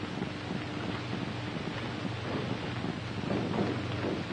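Steady hiss with a faint low hum: the background noise of an old film soundtrack, with no distinct event standing out.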